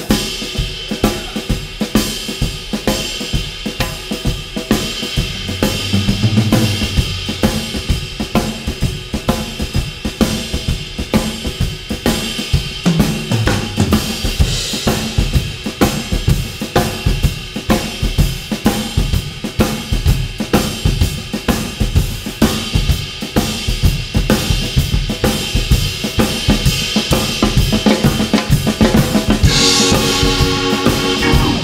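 Drum kits playing a shuffle groove: snare, bass drum, hi-hats and cymbals in a steady, evenly repeating beat. Sustained keyboard chords come in near the end.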